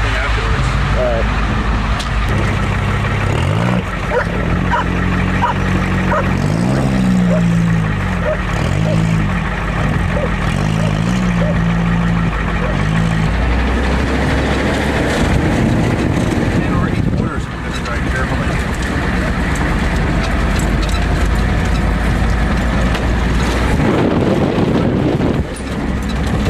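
Ford pickup truck's engine running just after a cold start, revved up and back down several times for the first half, then settling into a steady low run.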